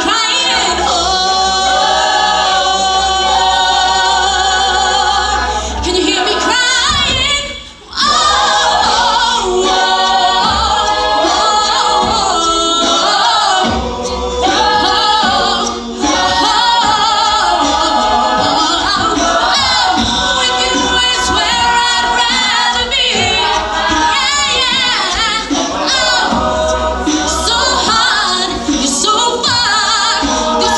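Co-ed a cappella group singing: a female lead voice over layered backing vocal harmonies, with a brief break in the sound about eight seconds in.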